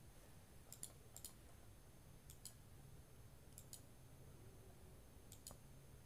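Faint computer mouse clicks, mostly in quick pairs, about five times over a few seconds, as the font menu is clicked open and tried again; otherwise near silence.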